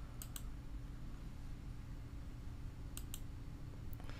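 Computer mouse button clicked twice, about three seconds apart. Each click is a quick double tick of press and release, over a faint steady low hum.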